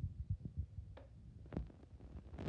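Handling noise from a hand-held phone: soft, irregular low thumps against the microphone, with a light click about a second in and another about a second and a half in.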